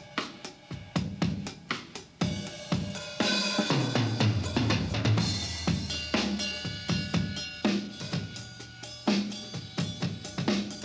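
A drum kit played on its own in a rock groove of bass drum, snare and hi-hat, with cymbal crashes: the heavier, more rock-and-roll version of the beat, played for the song's solo sections. The cymbals ring out strongly from about three seconds in.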